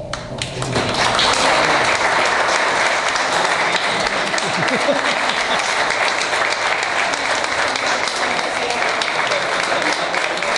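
Audience applauding, starting about a second in and carrying on steadily.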